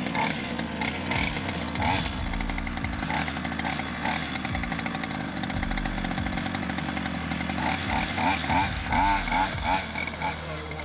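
Small two-stroke petrol engine of a 1/5-scale Technokit Junior RC car running as the car drives. It revs up and down, with the pitch rising and falling more often near the end.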